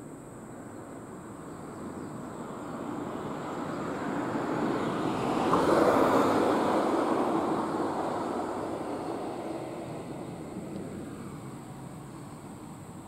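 A motor vehicle passing by on the road. Its tyre and engine noise swells gradually to a peak about halfway through, then slowly fades away.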